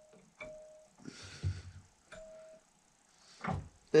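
Small hardened and tempered 1070 steel spring handled at a steel bench vise: light metallic clicks, two of them each followed by a short, clear ringing tone of about half a second, with some duller handling noise between them.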